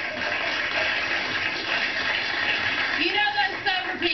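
Studio audience laughing and applauding, a dense steady wash of noise that thins out as voices come back in about three seconds in.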